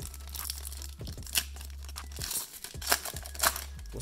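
Foil Pokémon booster pack wrapper being torn open and crinkled by hand: a run of short, irregular rips and crackles, a few sharper ones in the middle and near the end.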